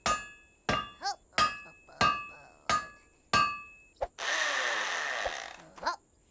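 Cartoon hammering sound effects: about eight sharp blows at an uneven pace, each with a short metallic ring. Near the end the hammering gives way to about a second and a half of harsh hissing noise.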